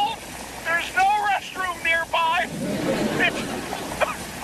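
High, strained voices calling out over storm noise of wind and rain, with a brief low rush of wind noise about three seconds in.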